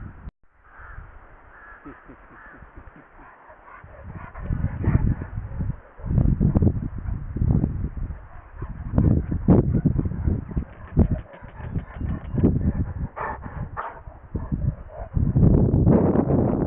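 Rumbling knocks and rubbing on the microphone as a large dog bumps against a camera held low to the ground, loud and irregular from about four seconds in. A few short harsh calls sound over it.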